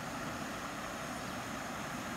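Swollen creek water running fast over a low earthen crossing: a steady, even rushing noise. The creek is running high with rainy-season water.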